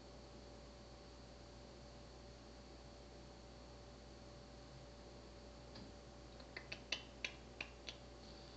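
Near silence with a faint steady hiss and hum, then a quick run of about eight small sharp clicks over the last two seconds.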